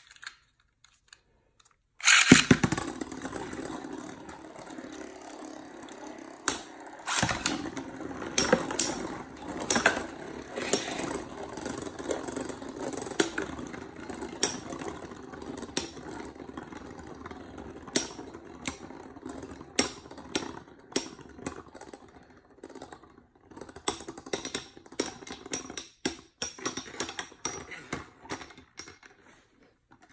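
Two metal-wheeled Beyblade spinning tops launched into a clear plastic stadium about two seconds in, then whirring as they spin, with many sharp clicks and knocks as they clash with each other and the stadium wall. The sound dies away shortly before the end.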